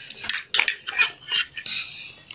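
Wooden chopsticks scraping and clicking against a plastic container of instant noodles, a quick run of short strokes about two or three a second.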